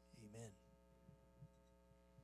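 Near silence with a steady electrical hum from the sound system, after one short spoken word at the very start. A few faint low thuds come after it.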